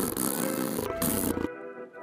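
A lion's roar sound effect, a long rough growl that cuts off suddenly about one and a half seconds in, with background music.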